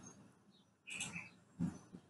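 Faint bird chirp of two quick high notes about a second in, in an otherwise nearly silent room, with a soft low blip shortly after.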